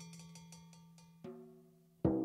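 Soft passage on a Ludwig Element drum kit: quick light stick taps with a bell-like metallic ring, about eight a second, over a low drum tone dying away, then a single soft tom stroke just past halfway.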